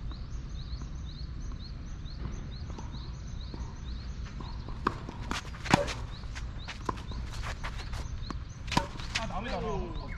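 Tennis rally: a few sharp pops of rackets striking the ball, the loudest, from the near player's racket, a little past halfway, with a steady low wind rumble under it.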